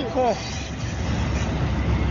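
Low, steady rumble of approaching diesel locomotives, with a short spoken word at the start.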